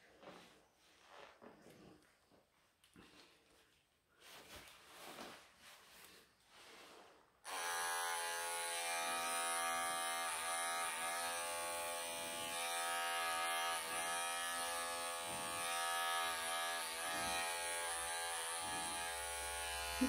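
Wahl professional electric pet clippers switch on about seven seconds in and then run with a steady buzzing hum. They are shearing a tight matted pelt off a longhaired Persian cat's coat.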